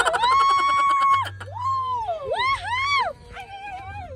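A high-pitched human voice holding one long note for about a second, then a few rising-and-falling swoops, a wordless playful wail.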